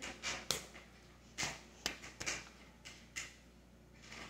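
A woman whispering or breathily mouthing words in short syllable-length bursts without voice, with two sharp clicks, about half a second in and just under two seconds in.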